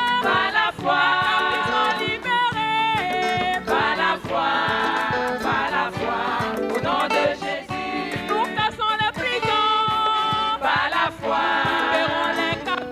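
Large choir of women's and children's voices singing a gospel song, with a soloist on a microphone, over steady rhythmic hand clapping.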